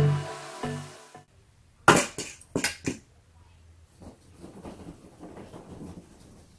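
Background music with a steady beat stops about a second in. Then come a few sharp clacks of clothes hangers knocking against the closet rod, followed by faint rustling of clothes.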